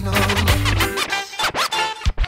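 Reggae music with a heavy bass line in a DJ mix; about a second and a half in the bass cuts out and a turntable scratch sweeps across it as a transition.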